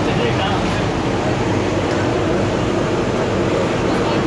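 Hot oil sizzling steadily in a large iron karahi as round patties deep-fry, over a constant rumble of street traffic and voices.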